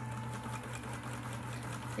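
Electric sewing machine running at a steady speed: an even motor hum with rapid, regular ticking of the needle and feed as it stitches through fabric, sewing cleanly without catching the thread.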